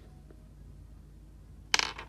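Faint steady low hum, then a sudden loud rustling burst near the end: handling noise as the phone camera is moved over a toy pickup truck.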